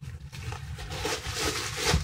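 White paper stuffing rustling and crinkling as it is pulled out of a small leather handbag, growing louder toward the end.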